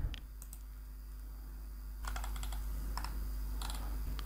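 Computer keyboard keystrokes: a couple of taps near the start, then a quicker run of typing from about halfway through, the kind of typing done to enter a web address, over a steady low hum.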